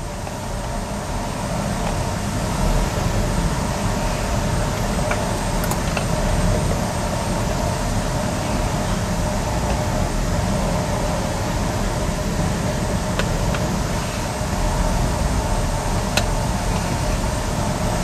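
Steady machine-like rumble and whir, even throughout, with a few faint clicks.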